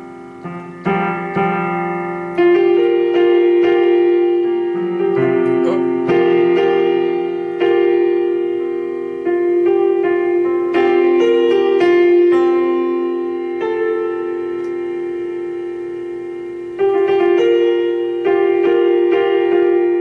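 Electronic keyboard with a piano voice playing sustained two-handed chords, a C dominant seven suspended four with B flat in changing voicings, struck about every second or two and left to ring and fade.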